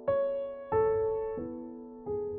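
Slow, gentle piano music: notes struck about every two-thirds of a second, each left to ring and fade away.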